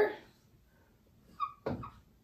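Red dry-erase marker drawing on a whiteboard: a short squeak about a second and a half in, then a quick scratchy stroke just after.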